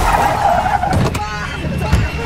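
Car sounds in a movie trailer's mix: a sudden loud hit, then tyres squealing for about a second over a steady engine rumble, with a brief voice.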